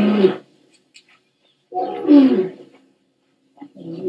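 Dromedary camel calling: two loud calls, each under a second long, the first ending about half a second in and the second about two seconds in.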